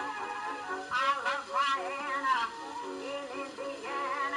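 A 1921 acoustic-era record of a woman singing a popular song with a wide vibrato over instrumental accompaniment. The sound is thin, with almost no bass.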